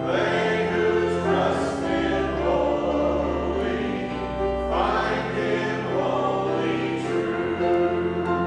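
A man and a woman singing a hymn together into microphones, with sustained instrumental accompaniment underneath; new sung phrases begin about a second in and again around five seconds in.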